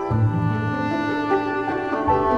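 Background film score of sustained bowed string notes, with low notes coming in at the start and the held chords shifting every half second or so.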